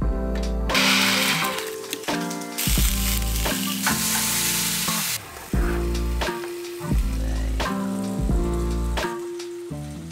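Sausage sizzling as it fries in a pan, a hiss that is strongest for the first five seconds, under background music with a bass line.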